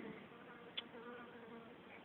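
A housefly buzzing faintly around the microphone, with a single small click a little under a second in.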